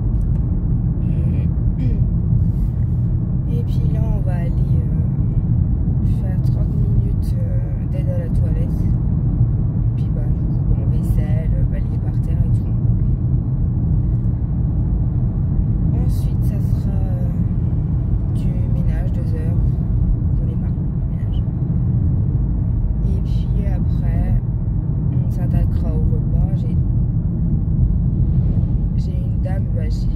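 Car cabin noise while driving: a steady low rumble of road and engine noise.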